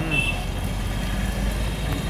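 Road traffic passing close by: a steady low rumble of motorbikes and cars.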